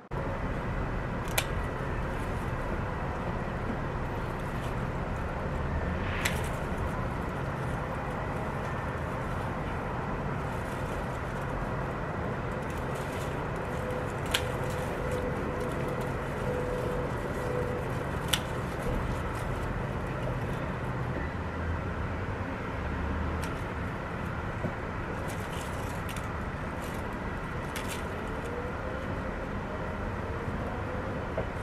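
Steady low hum of city traffic, with about five short, sharp clicks spaced several seconds apart.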